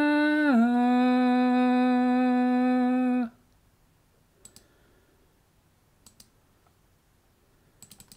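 A man's voice singing unaccompanied, holding one long note that steps down in pitch about half a second in, then stopping abruptly a little after three seconds. After that there is near silence with a few faint paired clicks.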